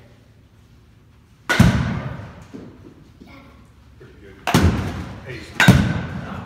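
Baseball bats hitting balls off batting tees: three sharp cracks about a second and a half in, at four and a half seconds and near the end, each ringing on briefly in the large hall.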